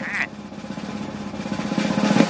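Snare drum roll in a cartoon score, growing steadily louder. It opens with the brief tail of Chicken's scream.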